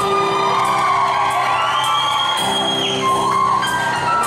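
Live band music with sustained steady chords, and an audience cheering and whooping over it.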